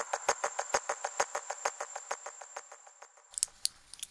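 The tail of an electronic music piece: a fast electronic clicking pulse, about seven ticks a second with a faint pitched ring in each, fading out over about three seconds together with a thin high whine.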